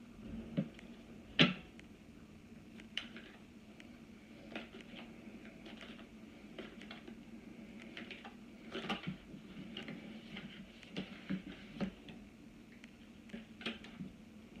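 Tarot cards handled and shuffled by hand: scattered soft clicks and taps, with one sharper knock about a second and a half in.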